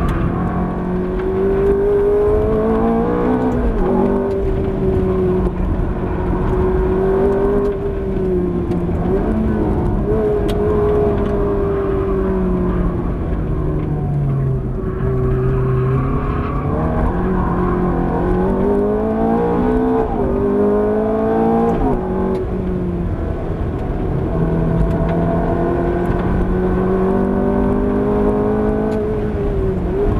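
Ferrari F430's V8 engine driven hard around a track, heard from inside the car. The revs climb and drop sharply at each gear change several times, and fall lowest around the middle as the car slows for a corner before pulling up again.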